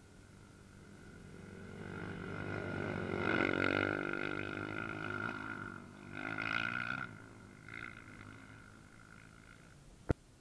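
Off-road racing engine revving as it approaches and passes close by, loudest about three to four seconds in, then two shorter bursts of revving.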